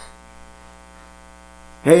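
Steady electrical mains hum, a buzz with many evenly spaced overtones, coming through the microphone's sound system during a pause. A man's voice starts again just before the end.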